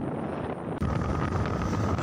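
Wind and road noise on the microphone from riding in the open bed of a moving pickup truck. A little under a second in, it cuts to a louder, deeper rumble with a steady whine, from riding a Honda Mega Pro motorcycle.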